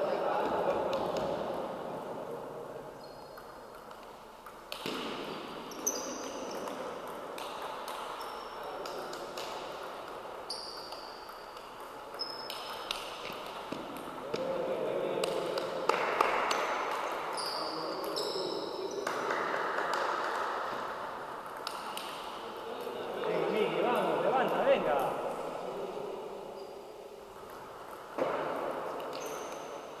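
Celluloid-type table tennis ball being struck back and forth, short sharp ticks of ball on rubber paddles and on the table, coming in irregular runs of rallies with pauses between points.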